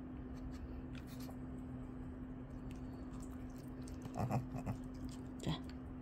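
Faint sniffing and mouth clicks of a Shih Tzu nibbling at a piece of beef jeon held out by hand, over a steady low room hum. A woman says a short word near the end.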